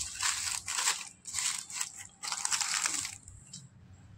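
Paper burger wrapper crinkling as it is unwrapped by hand, in three bursts of rustling that stop about three seconds in.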